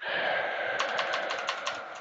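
Typing on a computer keyboard: a quick run of keystrokes starting about a second in, re-entering a search term. Under it, and loudest early on, a breathy hiss like an exhale.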